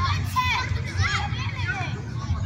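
Young children's voices calling out and shouting to each other during a football game, high-pitched and overlapping, over a steady low rumble.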